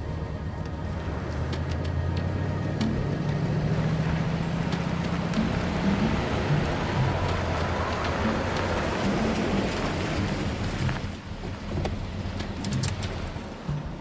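A 1959 Cadillac convertible driving, its engine and road noise building to a peak about eight to ten seconds in and falling away shortly after. Low background music plays underneath.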